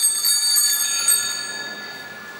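Altar bells ringing in a quick shimmering peal, with one more stroke about a second in, then fading away. This marks the elevation of the host at the consecration of the Mass.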